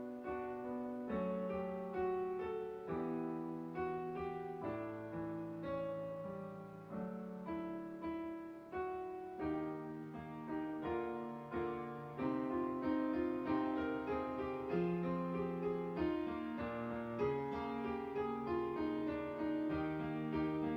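Digital piano playing a hymn in struck chords, a new chord every half second to a second, growing a little louder about halfway through.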